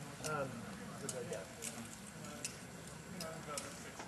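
Low outdoor background of faint voices, with about six short, sharp clicks scattered through it.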